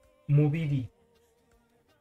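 A man's voice says one short phrase about a third of a second in. For the rest there are only faint, steady held tones.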